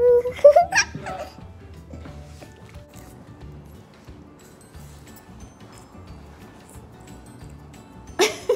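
A young girl's voice rises into a short high squeal in the first second, then it drops to a quiet stretch with only faint background music.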